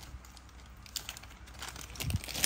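Faint handling noise of small metal tool parts: light clicks and rustling as pieces are picked up, with a sharper tick about a second in.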